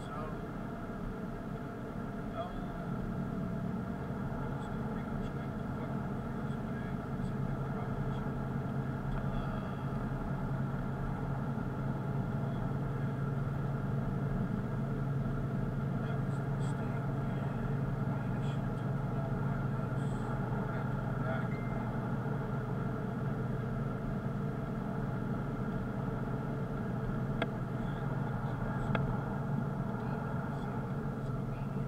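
Steady engine and road drone of a car driving at an even speed, heard from the car, growing slightly louder over the first few seconds. A couple of faint clicks come near the end.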